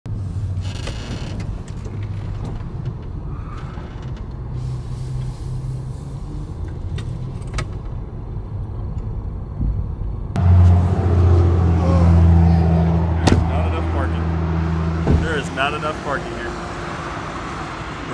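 Car engine and road rumble heard from inside the cabin as the car rolls slowly. About ten seconds in, the sound switches abruptly to a louder, steady low engine hum. That hum stops at about fifteen seconds, after a sharp click or two.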